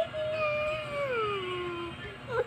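A young child's voice drawing out a long "maaa". It holds one pitch, then slides down and settles on a lower note near the end.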